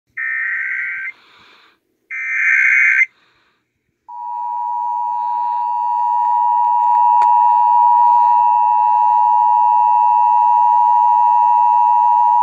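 Emergency Alert System alert played through a small radio's speaker: two short buzzy electronic data bursts, about a second each, then after a pause of about a second a long, steady, loud electronic alert tone that starts about four seconds in and lasts over eight seconds. This is the EAS header and attention signal that come before a spoken Amber Alert.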